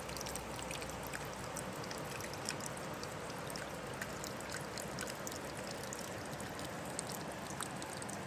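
A small trickle of water running down wet, mossy rocks into the river: a steady gentle splashing hiss, dotted with many tiny drips and splashes.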